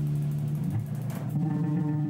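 Live band music with an electric guitar playing, holding steady low notes.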